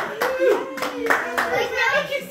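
A few sharp hand claps at uneven spacing, with children's voices.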